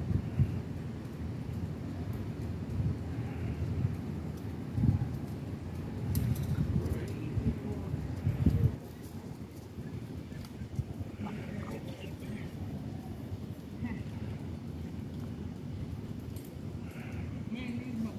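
Faint, distant voices over a steady low rumble of outdoor background noise. The rumble is louder in the first half and eases off about halfway through.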